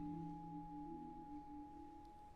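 Quiet music: soft held low notes that shift in pitch, under one steady high ringing tone, fading toward the end.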